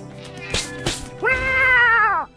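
A cat meowing: one long meow starting just over a second in, its pitch bending down at the end. It is preceded by two short bursts of hiss, over soft background music.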